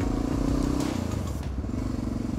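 Honda NX650 Dominator's single-cylinder 650 engine running steadily as the motorcycle rides along.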